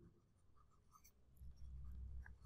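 Near silence, then from about halfway in faint scratches and taps of a stylus writing on a tablet screen.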